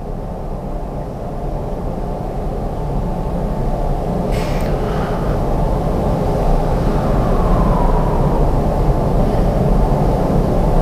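A low, steady rumble that swells gradually louder, with a brief faint hiss about halfway through.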